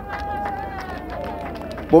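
A voice at lower level than the main speech, holding one long, slowly falling note.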